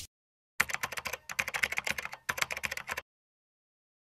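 Keyboard-typing sound effect: a run of quick, sharp key clicks starting about half a second in, pausing briefly just after a second, and stopping at about three seconds.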